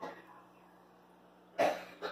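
A person coughing, with a faint one near the start and a loud short cough about one and a half seconds in, over a steady low hum.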